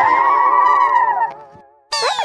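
A high-pitched voice holds one long, wavering note for about a second and a half, then fades away.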